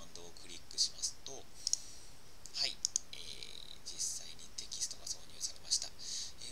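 Soft, half-whispered muttering with breathy hiss, broken by a few sharp computer mouse clicks, some in quick pairs, as a header style is chosen from a menu.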